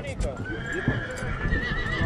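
A horse whinnying: one long high call that starts about half a second in and wavers near the end.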